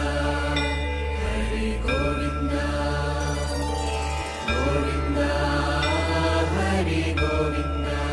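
Hindu devotional outro music: a chanted mantra sung over a deep, steady drone with instrumental accompaniment, dipping briefly a little past the middle.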